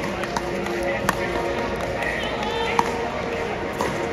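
Crowd murmur and scattered voices in a large hall, with a few sharp pops about a second apart.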